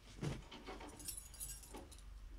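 Handling noises close to a microphone: a dull thump, a few light knocks, then a brief light metallic jingling a second in.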